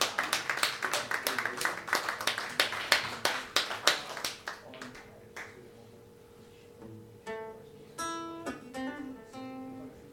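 Applause from a small audience dying away over the first four or five seconds, then an acoustic guitar being tuned: a few single plucked notes ringing out one after another near the end.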